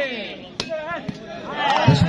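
A single sharp smack of a hand striking a volleyball about half a second in, over an announcer's voice and crowd noise.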